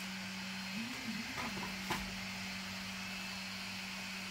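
Steady low hum and hiss of room tone, with one light click about two seconds in as the glass display panel is handled.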